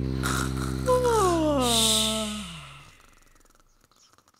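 The children's song ends on a held chord that fades out. About a second in, a voice gives a long yawn over it, sliding down in pitch, and everything dies away by about three seconds.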